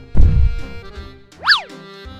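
Background music for a children's cartoon with a low thud about a fifth of a second in. About a second and a half in, a quick cartoon sound effect sweeps up in pitch and straight back down.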